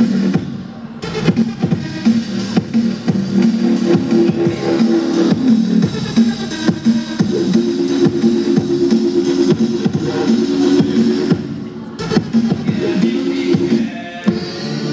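Electronic dance music with a steady beat, dipping briefly about half a second in and again near the end.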